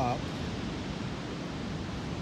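Steady, even rushing outdoor noise with no distinct events, following the tail of a man's spoken word at the very start.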